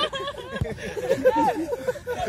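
A group of young men chatting and laughing together, several voices overlapping.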